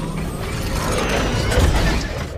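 Logo-intro sound effect: a dense, continuous mechanical-sounding texture under the animated metallic lettering, carrying on from a sudden boom just before and fading out just after.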